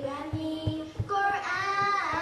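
A group of children singing together into microphones, the held notes growing fuller about a second in, with a few soft low thumps underneath.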